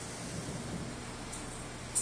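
Room tone: a steady hiss with a low hum, and a short click near the end.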